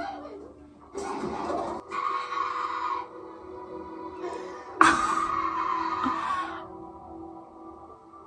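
TV drama soundtrack playing on a television: background music of held, sustained notes, broken by sudden louder noisy passages about a second in and again near five seconds in.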